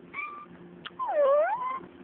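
Domestic cat meowing twice: a short, faint meow, then about a second in a louder, longer meow that dips in pitch and rises again.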